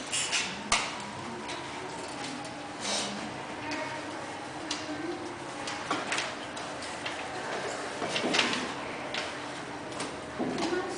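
Irregular light knocks and taps of soft play balls bouncing and being hit by children on an indoor tennis court, with a sharp click just under a second in and a louder noisy patch about eight seconds in.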